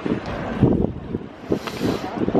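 Wind buffeting the microphone in irregular gusts of low rumble.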